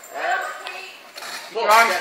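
A coach shouting gymnastics cues, the loudest call ('arm straight') coming near the end, with an earlier shout just after the start. A short light metallic clink sounds between the calls.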